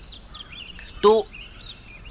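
Faint high chirping over a low steady background hum, with one short spoken word about a second in.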